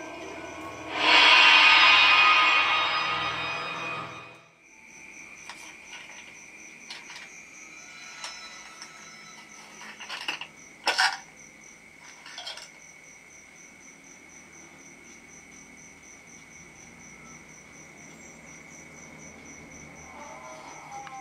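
Horror film soundtrack: a loud music swell about a second in that fades away over some three seconds. It gives way to a quiet, steady high trill with an even pulsing chirp, and a few faint clicks around the middle.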